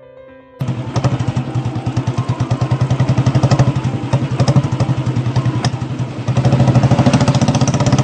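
Motorcycle engine sound effect, a recorded engine running with a rapid, even pulse. It starts suddenly under a second in and gets louder about six seconds in.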